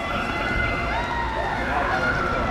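Players' voices shouting and calling out across the pitch during a small-sided football game, several drawn-out calls overlapping, over a steady low outdoor rumble.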